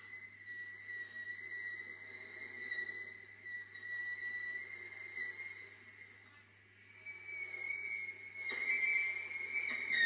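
Solo viola bowed quietly, holding a thin, high, whistling tone that wavers slightly. It fades a little past the middle, then grows louder over the last few seconds.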